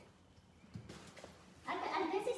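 Quiet with a few faint soft taps, then near the end a woman's voice starts with a drawn-out, wavering vocal sound that leads into speech.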